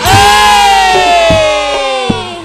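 A woman singer holds one long, loud note that slides slowly down in pitch, over the campursari band with a few low drum strokes.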